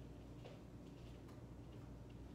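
A few faint, irregularly spaced footsteps on a wooden floor over a low steady room hum.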